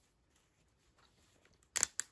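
Quiet handling of a 1/6-scale action figure and its small toy rifle, faint ticks, then a short cluster of sharp clicks near the end as the rifle is worked into the figure's hand.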